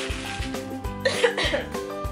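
Background music with a steady beat; a little over a second in, a woman gives one short cough.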